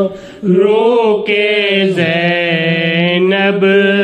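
A man chanting in long, drawn-out melodic notes, with a short pause for breath just after the start.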